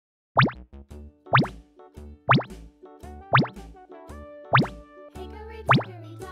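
Six quick rising 'bloop' pop sound effects, one about every second, over light children's background music.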